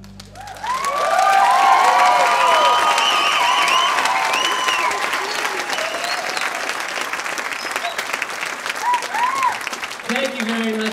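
Concert audience applauding and cheering as the last note of a song dies away. The clapping swells about half a second in, is loudest over the next few seconds with whoops and whistles, then thins out toward the end.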